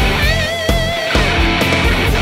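PRS SE Santana Abraxas electric guitar playing a lead line over a backing with drums and bass. A third of a second in, a high note is held with wide vibrato for most of a second, then shorter notes follow.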